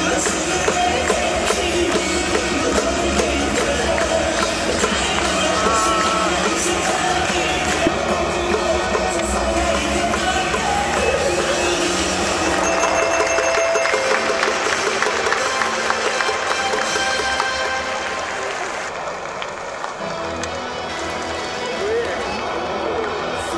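Music playing over a stadium's public-address system, with crowd noise underneath.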